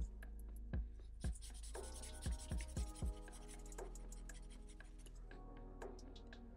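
Black felt-tip marker drawing strokes on paper, over background music with a beat.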